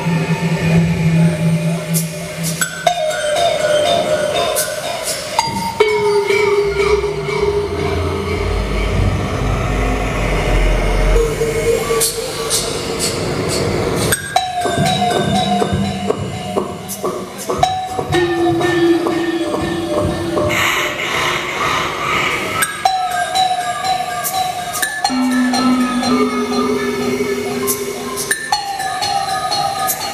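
Live experimental electronic music played on tabletop electronics: layered held tones that step to new pitches every few seconds, with scattered sharp clicks and a deep rumble partway through.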